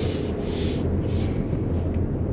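Steady low rumble and hiss of road and tyre noise inside the cabin of a moving 2023 Lexus RX 350h hybrid SUV.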